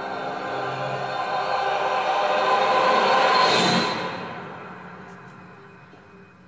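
Ominous movie-trailer music swelling to a loud whoosh about three and a half seconds in, then fading away.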